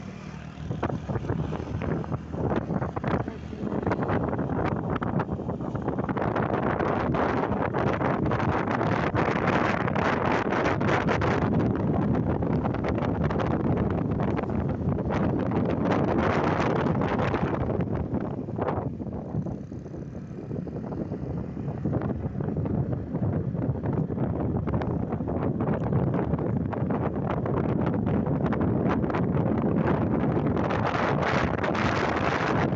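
Wind rushing over the microphone of a moving motorcycle, mixed with the bike's engine and road noise. It eases off for a few seconds about two-thirds of the way through, then picks up again.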